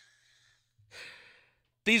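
A man's short, breathy laughing exhale through the microphone about a second in, between quiet pauses, after the fading tail of a previous laugh; he starts speaking again at the very end.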